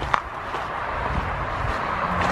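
Footsteps crunching over gravel, with a steady hiss and low rumble and a short sharp click just after the start.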